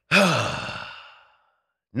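A man sighs: one long exhale that starts voiced, dropping in pitch, then trails off into breath and fades away within about a second.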